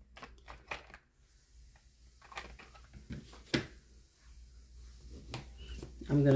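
Sparse light clicks and knocks of crayons and plastic marker barrels being picked through and handled on a table, with one sharper click about three and a half seconds in.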